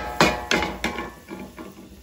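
Wooden spatula knocking against a cast iron skillet: a run of sharp knocks, about three a second, growing weaker toward the end.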